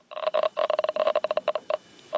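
Radiation detector's audible signal: a fast run of short beeps at one steady pitch, about ten a second, stopping shortly before the end.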